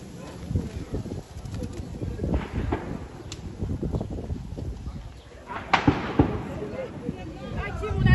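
Gunfire in the streets: several sharp cracks scattered through, the loudest near six seconds in, over low street murmur and voices.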